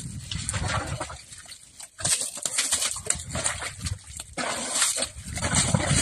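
An elephant working wet mud with its trunk, a wet, noisy scuffing that comes and goes in irregular spells and drops away briefly about two seconds in.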